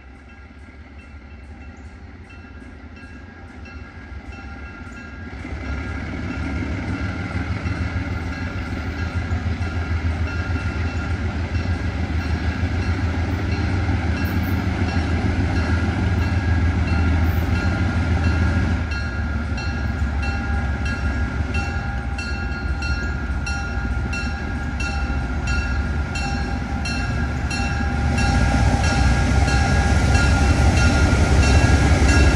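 ALCO FPA-4 diesel-electric locomotives approaching at the head of a passenger train: a deep engine rumble with steady high tones over it, growing louder as the train nears, with a short drop about two-thirds of the way in and a final rise near the end.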